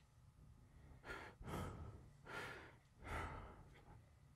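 Four quiet, heavy breaths or sighs from a person, one after another starting about a second in, each a short rush of breath without voiced words.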